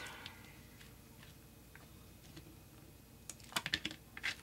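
Light clicks and taps of small jar lids being pressed onto paper and set down on the craft table, mostly in a quick cluster near the end, otherwise faint.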